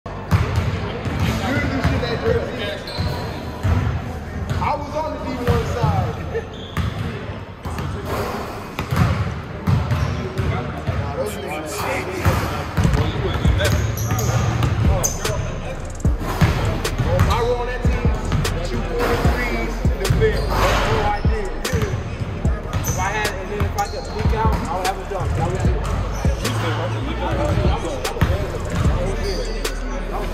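Basketballs bouncing on a hardwood gym floor in repeated sharp thuds, with players' voices echoing in the large hall.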